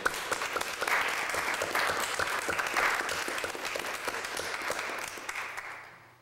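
A small group applauding in a meeting room, a dense patter of claps that fades away near the end.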